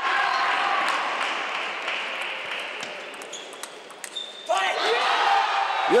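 Table tennis ball clicking off bats and table in a quick rally, over a wash of hall noise that swells at the start and slowly fades.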